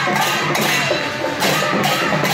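Live percussion: drums and repeated cymbal clashes played loudly, with crowd voices underneath.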